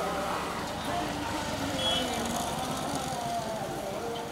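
Busy street ambience: road traffic with a crowd of people talking over one another, and a short high double beep about two seconds in.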